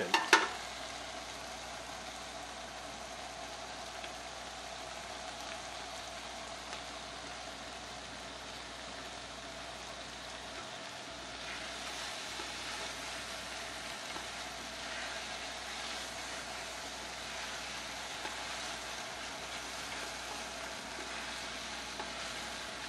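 Sliced beef hot dogs and diced onion sizzling steadily as they sauté in a stainless steel stockpot, stirred now and then with tongs. The sizzle grows a little louder about halfway through.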